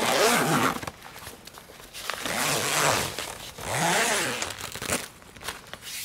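Zipper being drawn along an annex draught skirt in three long pulls, joining the skirt to the annex base.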